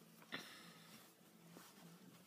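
Near silence: room tone, with one faint short click about a third of a second in.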